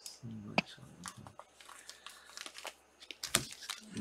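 Plastic card sleeves and rigid top loaders crinkling and clicking as sleeved trading cards are handled and stacked, with irregular crackles and a couple of sharper clicks.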